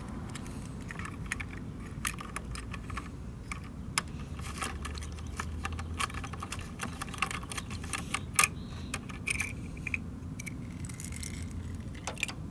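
Irregular small clicks, taps and rattles as a miniature plastic trash cart is handled against the rear loader of a 1:34 scale diecast garbage truck model and set back down, over a low steady hum.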